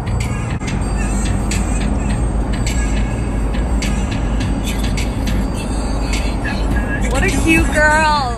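Steady low road rumble of a moving vehicle heard from inside, with the lemur's wire crate clicking and rattling. Near the end a wavering pitched sound glides up and down.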